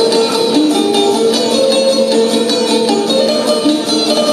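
Çifteli, the Albanian two-string long-necked lute, played instrumentally: a quick plucked melody over a steady drone note.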